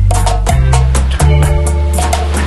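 Reggae background music with a steady beat: regular drum and percussion hits over a held bass line.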